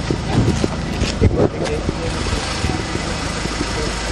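Engine of a gendarmerie van running close by, a steady low drone, with a few knocks and brief voices in the first second or two.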